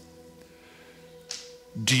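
Soft background music of steady held keyboard-like tones under a pause in speech, with a short sharp sound about a second in. A man's voice starts again at the very end.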